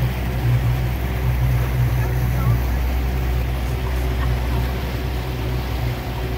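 Motorboat engine running steadily, a low drone, with water noise underneath.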